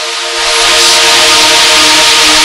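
Electronic dance music breakdown with no beat: a loud white-noise swell over held synth chords, the noise jumping up in level and brightness about half a second in.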